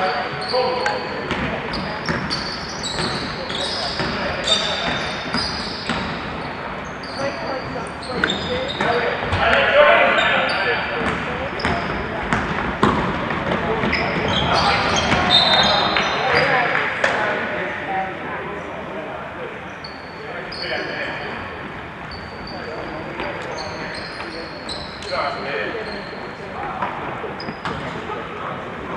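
Live basketball play on an indoor court: the ball bouncing in sharp knocks, many short high-pitched squeaks, and players' and spectators' voices that swell about a third of the way in and again past halfway.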